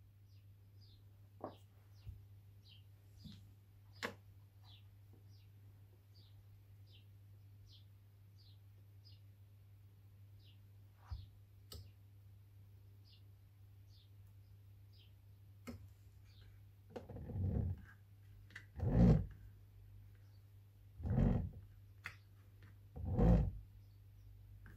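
Fisher & Paykel SmartDrive washing-machine motor's rotor being spun by hand as a generator, four short whooshes about two seconds apart in the last third, after a quiet stretch with a few faint clicks.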